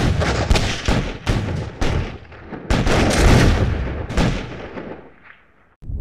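Battle sound effect: a dense run of gunshots with heavier booms among them, fading out near the end.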